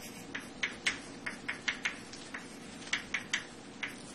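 Chalk on a blackboard while structures are drawn: a quick, irregular run of about a dozen short taps and scrapes, with a brief pause about two seconds in.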